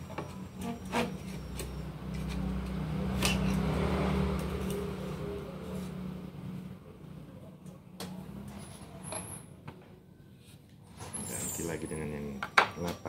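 A motor vehicle's engine running nearby, a low hum that swells over the first few seconds and then fades away, with a few sharp clicks from the knife being handled in the sharpener's clamp.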